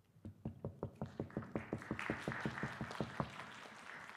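Audience applauding: a quick, regular run of sharp claps close to the microphone, joined about a second and a half in by many hands clapping together. The claps thin out near the end.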